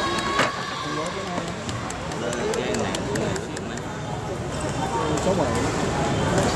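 Voices talking in an indoor sports hall, with one sharp knock about half a second in and a run of faint clicks between about two and four seconds.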